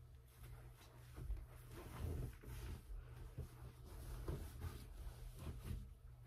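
Soft, scattered rustles and light knocks of bedding being handled and someone moving about a small room, over a steady low hum.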